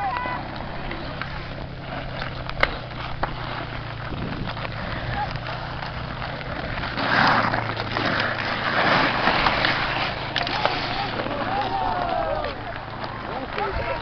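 Ice skate blades scraping and carving on outdoor lake ice, swelling into a louder stretch of several seconds around the middle. A sharp clack of a hockey stick on the puck comes near the start, a low steady hum runs through the first half, and players shout near the end.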